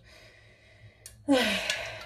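A woman's breathy sigh about a second in, falling in pitch, after a nearly quiet start.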